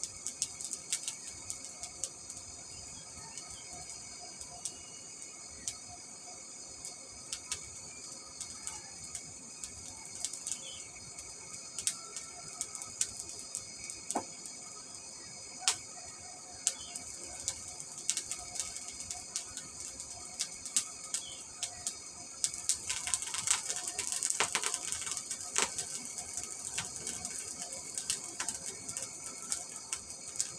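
Small charcoal forge running on an electric blower: a steady hiss with scattered crackles and pops from the burning charcoal, getting louder and busier with sparks from about three-quarters of the way in, as a steel chisel is brought up to heat for quenching.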